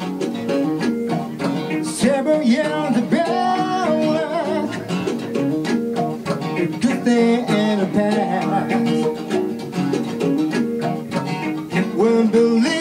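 Acoustic guitar strumming chords, with a man singing over it in a live song.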